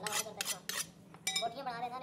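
Butcher's meat cleaver chopping mutton on a wooden log chopping block: a quick series of sharp chops with a metallic clink, then another chop a little over a second in.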